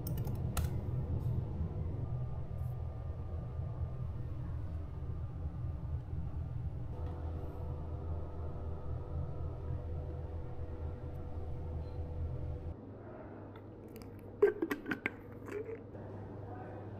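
Steady low hum of room background, with a few sharp clicks near the start. Nearly 13 seconds in, the hum cuts out abruptly to quieter background, and a brief cluster of sharp clicks and squeaks follows.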